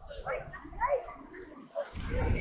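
Spectators' voices talking nearby in short snatches of speech, with quieter gaps between them.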